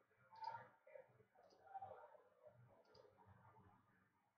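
Near silence: faint room tone with three faint, short clicks spread through it.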